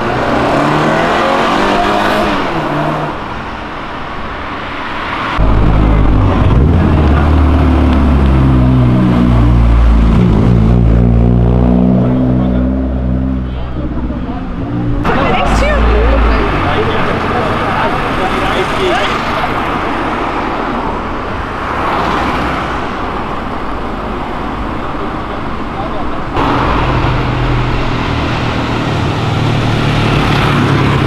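Car engines revving hard as cars accelerate past one after another, loudest from about five to fifteen seconds in, with the engine pitch climbing and dropping. Another engine burst comes near the end.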